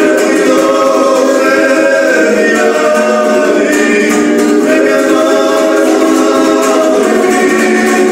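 Two male voices singing a Gurian folk song together, accompanied by a strummed Georgian folk lute.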